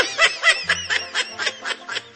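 A person laughing in a quick string of short, high-pitched bursts, about six a second.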